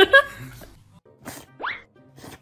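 Comic sound effects laid over music: a loud hit right at the start that fades within half a second, then a quick rising boing-like sweep near the end.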